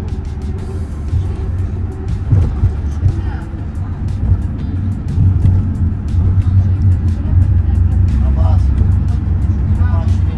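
Steady low rumble of engine and road noise heard inside the cabin of a moving vehicle.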